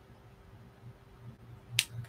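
Quiet handling of braiding threads with a single sharp click near the end, as the marudai bobbins (tama) knock together while being moved across the mirror. A faint steady hum sits underneath.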